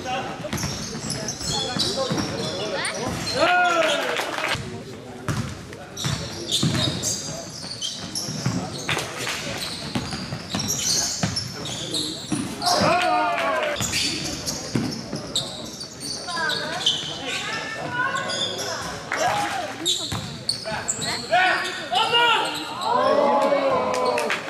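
Basketball game in play: a ball bouncing on the court floor as it is dribbled and passed, amid shouts from players and spectators in a large sports hall.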